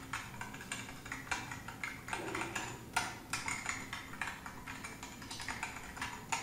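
Typing on a computer keyboard: a quick, irregular run of key clicks, several a second, with a few harder strokes.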